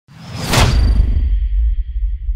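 Logo-reveal sound effect: a whoosh swelling to a peak about half a second in, over a deep low rumble that carries on, with a faint high ringing tone fading out.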